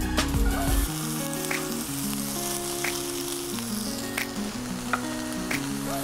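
Bacon strips sizzling as they fry in a hot cast-iron pan, an even hiss with a sharp pop of spitting fat now and then. Background music of held notes plays underneath.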